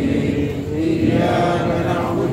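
Several voices chanting Islamic prayers together in long drawn-out notes.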